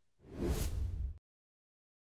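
Whoosh transition sound effect, about a second long, swelling up and then cutting off abruptly.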